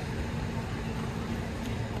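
Steady outdoor city ambience: a low hum of distant road traffic, with a faint steady tone that stops just before the end.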